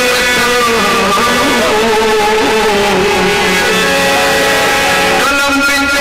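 A man singing a Sindhi Sufi song into a microphone, holding long notes that slide slowly in pitch, over plucked string accompaniment.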